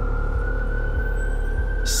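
A siren wailing slowly: one long tone that rises and begins to fall near the end, over background music with a low, regular pulsing beat.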